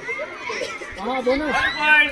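Young male voices shouting and calling over one another during a kabaddi raid, with children's chatter around them.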